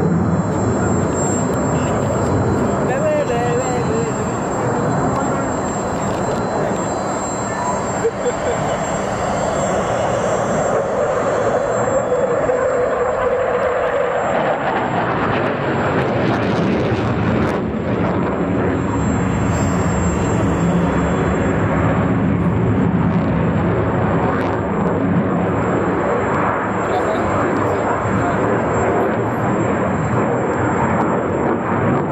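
Jet noise from the JF-17 Thunder's Klimov RD-93 afterburning turbofan as the fighter flies display maneuvers overhead: a loud, continuous rushing sound, with a pitched note standing out of it for a few seconds in the middle.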